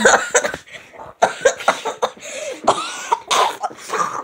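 A person coughing and making short throaty sounds close to the microphone, in irregular bursts.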